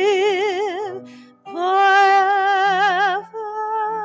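A woman singing a slow communion hymn with a wide vibrato, accompanied by grand piano. She holds one long note, breathes briefly about a second in, then holds another long note before it softens near the end.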